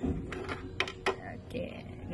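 Plastic drip-tray grille of an SK Magic Jiksoo Hyper water purifier being handled and lifted off its tray: a handful of sharp plastic clicks and light knocks.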